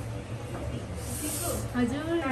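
A short hiss, lasting under a second, about a second in, followed by a voice near the end.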